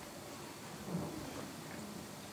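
A man sipping beer from a glass and swallowing, faint over quiet room tone, with one soft low gulp about a second in.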